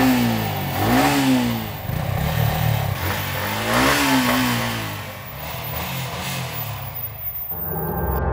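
Stationary sport motorcycle engine revved by twisting the throttle, pitch rising and falling three times: at the start, about a second in, and again about four seconds in.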